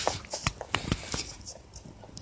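A house rabbit crunching treat crumbs: a run of small, irregular crunching clicks that thin out toward the end.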